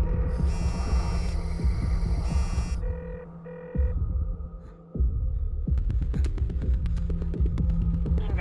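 Tense film background score: a low repeating pulse with a hum, high electronic tones over it in the first three seconds, and two short beeps about three seconds in. It drops away briefly around four seconds, then the pulse returns with sharp clicking accents.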